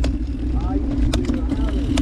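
Mountain bike coasting down a dirt singletrack: a steady buzz of the freehub and tyres rolling over dirt, with a few sharp rattles as the bike goes over bumps about a second in and near the end.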